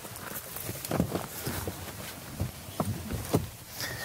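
A handful of light, irregularly spaced knocks and shuffling as a person climbs through the rear door into the back seats of an SUV.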